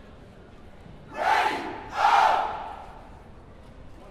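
Two loud group shouts, a little under a second apart, over quiet background noise.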